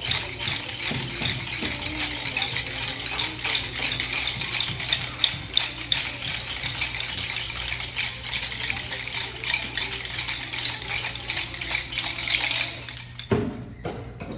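Many small hand shakers played together as a dense, continuous rattle that stops suddenly about a second before the end.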